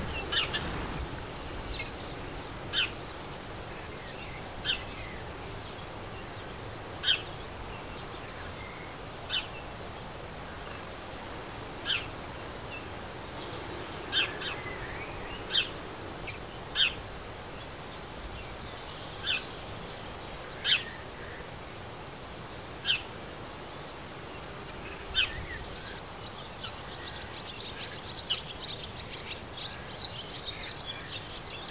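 European robin giving short, sharp tick calls, one about every two seconds, with a spell of faster twittering near the end.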